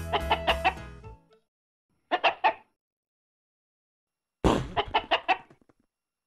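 Chicken clucking in three short runs of quick clucks: one right at the start over the tail of a music track that stops about a second in, one about two seconds in, and a longer run at about four and a half seconds.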